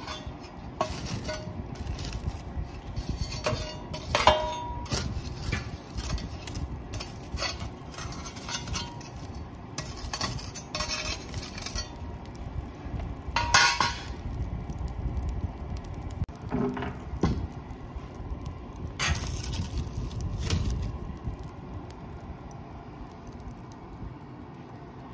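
Metal fire tool clanking and scraping inside a wood-burning stove's firebox as the burning logs are stoked, with a run of knocks and ringing clinks of metal on metal; one clank about halfway through is the loudest.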